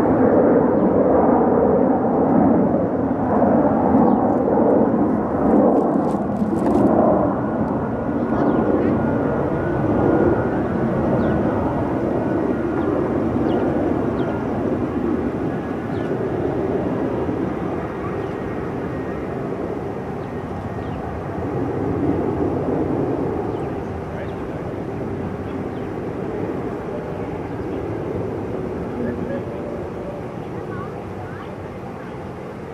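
Spirit Airlines Airbus A320neo's Pratt & Whitney geared-turbofan engines running loud as the airliner slows on the runway after landing, the jet noise gradually fading as it decelerates.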